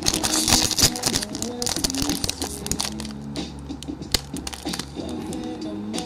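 Background music with a steady beat, over a foil Pokémon booster pack wrapper crinkling and crackling as it is handled and worked open, most densely about the first second.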